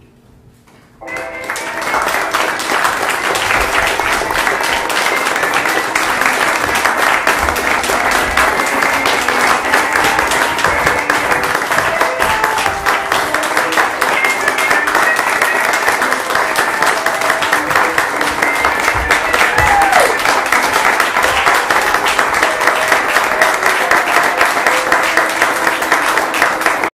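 Audience applauding, starting about a second in after a short pause and running on steadily, with some voices in the crowd.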